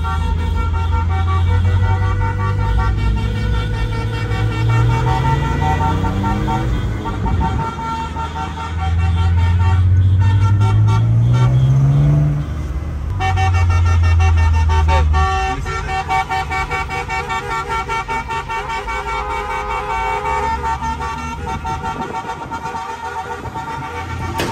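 Engine of a BMW E36 3 Series heard from inside the cabin, its revs rising twice as the car accelerates through the gears, then holding steady. Car horns honk over it throughout.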